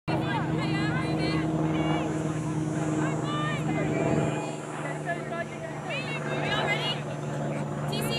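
Several voices calling and shouting across a sports field, overlapping one another, over a steady low hum.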